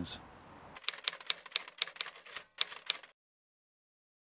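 Typewriter key clicks used as a sound effect: a quick, slightly irregular run of about a dozen sharp taps starting about a second in and stopping after about two seconds.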